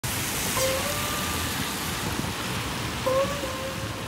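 Steady hiss of rain on a wet street, with two short pitched tones, each lasting about a second, one near the start and one about three seconds in.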